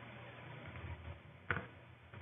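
A single sharp computer mouse click about one and a half seconds in, over a faint low steady hum.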